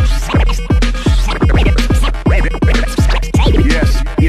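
Turntable scratching: a vinyl record worked back and forth by hand through a JICO J44A 7 stylus, chopped with the crossfader, over an electro beat with deep kicks that drop in pitch, several a second.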